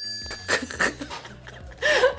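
A bright, bell-like chime sound effect rings out at the start and fades over about a second, over background music, likely marking a correct answer on the game's scoreboard.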